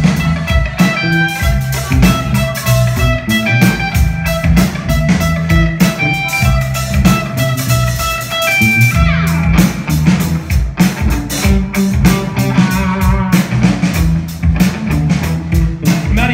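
Live rock band playing an instrumental passage: electric guitar over drum kit and bass guitar, with no vocals. The guitar slides down in pitch about nine seconds in and plays a quick run of rapidly repeated notes a few seconds later.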